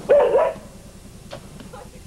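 A dog gives one short, high bark right at the start, its pitch rising and falling twice.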